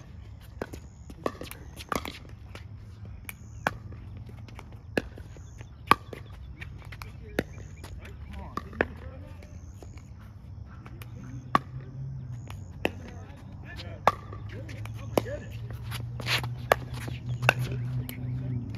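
Pickleball paddles hitting a plastic pickleball in a drill rally: a string of sharp pops, roughly one a second, some much louder than others. A steady low hum lies underneath.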